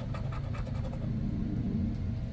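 A metal scratcher coin scraping the coating off a scratch-off lottery ticket in quick, short strokes, over a steady low rumble.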